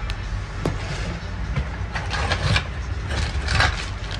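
A steady low rumble, with a few faint clicks and short rustles over it.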